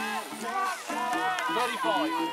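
A man's race commentary voice with music playing underneath.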